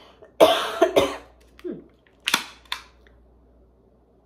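A woman coughing into her hand: a short bout of several coughs, the two loudest within the first second, then a few shorter ones.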